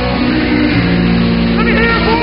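Live rock band playing loud, with distorted guitars holding sustained chords and a voice over it near the end.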